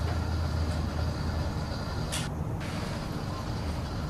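Steady low engine-like rumble in the background, with a brief hissing rustle about two seconds in.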